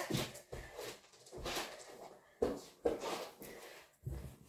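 Scattered short, faint knocks and rustles of a person moving about and handling a paper slip.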